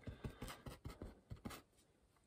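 Faint scratching of a paintbrush's bristles dabbing dark oil paint onto canvas in quick short strokes, about five or six a second, stopping shortly before the end.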